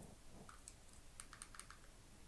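Near silence with a few faint, quick clicks, bunched together in the second half.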